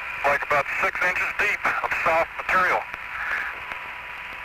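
Astronaut's voice over the Apollo lunar-surface radio link: thin, narrow-band speech through a steady static hiss, with the talk stopping about three seconds in and only the hiss remaining.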